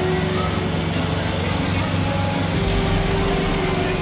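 Street parade sound: a small pickup truck's engine running as it drives slowly past, with a crowd's voices in the background.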